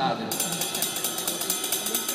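A rapid, even run of single-handed drumstick strokes on a cymbal of a drum kit, starting just after the start: fast, well-defined notes played with a push-pull up- and down-stroke of the fingers and wrist.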